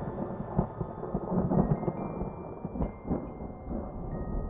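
Outro soundtrack: a dense low rumble like a thunderstorm, with a few sudden cracks, under faint held high musical tones.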